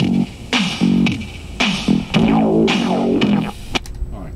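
Guitar music played from a cassette on a Sony WM-DD9 Walkman and heard through loudspeakers, with strong repeated strums. It cuts off abruptly near the end.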